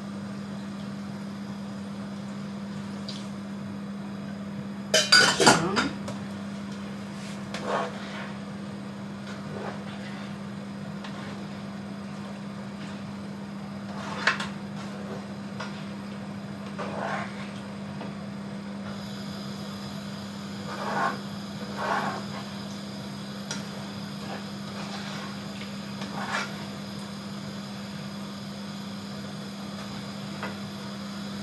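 Metal cookware clattering on a gas hob: a pan lid and frying pan knocked together in a loud cluster about five seconds in, then scattered lighter knocks and scrapes of a spatula in the frying pan, over a steady low hum.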